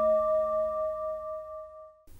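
Singing bowl ringing out after a strike, several steady pitches at once with the lowest one wavering, fading away until it dies out near the end.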